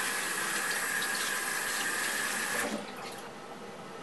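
Bathroom sink tap running as hands are rinsed under it. The water stops suddenly a little under three seconds in.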